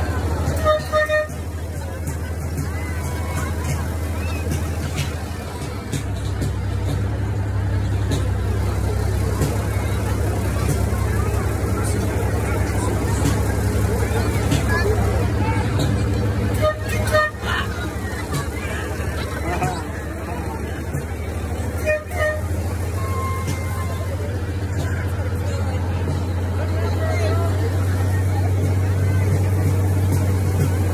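A vehicle's engine running at a steady low hum, with three short horn toots: one about a second in and two more past the middle. Crowd voices murmur underneath.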